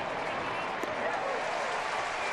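Ballpark crowd cheering and clapping, a steady wash of many voices.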